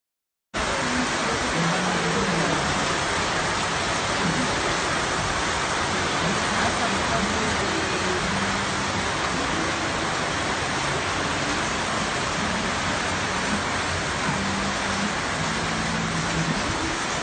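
Steady, even rush of heavy typhoon rain, coming in abruptly about half a second in after a moment of silence.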